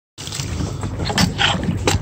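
Water splashing as a hooked shark thrashes at the side of a boat, with two sharper splashes, one about a second in and one near the end, over a steady low rumble.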